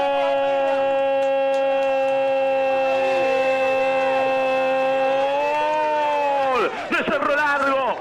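A Spanish-language radio football commentator's drawn-out goal shout: one long, loud "gooool" held on a single pitch. It swells slightly and then drops off about six and a half seconds in, and quick talk follows.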